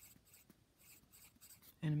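Pencil writing on lined spiral-notebook paper: a run of short, faint scratching strokes as numbers are written out.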